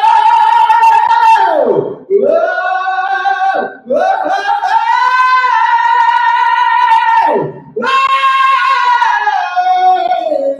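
A man singing long, high head-voice notes with his larynx held in the cry-mode position, carried up through the passaggio from cry-mode speech. There are four held phrases, each ending in a downward slide.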